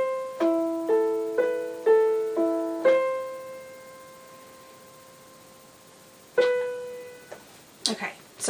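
Yamaha digital piano playing a slow single-note right-hand melody: seven notes about two a second, the last one held and fading away. After a pause, one more note is struck about six and a half seconds in and rings for about a second.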